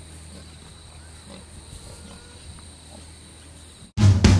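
Hens clucking softly now and then over a steady high insect drone and a low hum.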